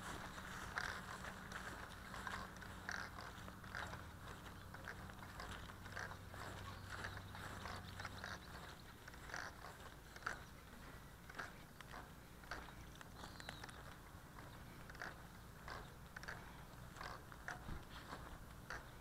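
Faint footsteps on dry ground, irregular crunches and scrapes about one to two a second, over a low steady hum that stops about eight seconds in.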